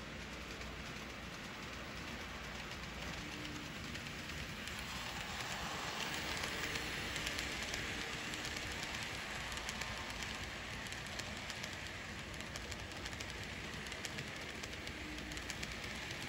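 N scale model passenger train rolling along the layout track: a steady rolling hiss of small wheels on rail with fine clicking, swelling as the cars pass close about six to eight seconds in.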